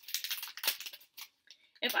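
Plastic bag of die-cut stickers crinkling as it is handled, a run of short rustles and crackles over the first second or so.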